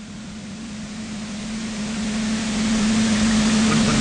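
Steady hiss with a low, even hum from a microphone and public-address setup during a pause in the announcing, slowly growing louder.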